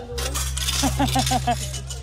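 Metal coin-pusher tokens clinking and jingling in the hand, a rapid scatter of small metallic clicks.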